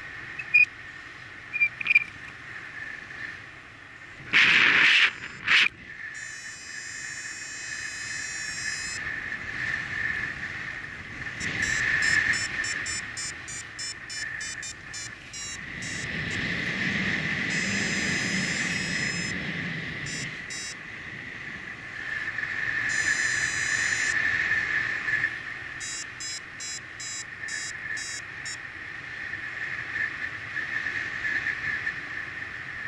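Airflow rushing over the microphone of a paraglider in flight, with two loud gusts of buffeting about four and a half seconds in. Over it, several runs of rapid beeping from a flight variometer, which signal that the glider is climbing in lift.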